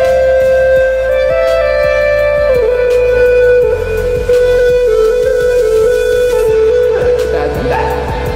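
Karaoke backing track playing an instrumental passage: a flute-like melody of long held notes stepping between pitches, over a steady beat and bass.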